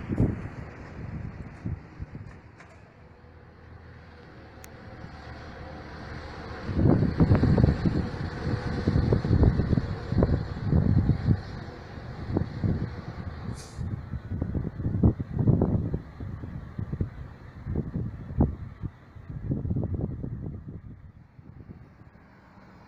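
Large tour bus moving along, with traffic noise and heavy, irregular wind buffeting on the microphone, and one short hiss about two-thirds of the way through.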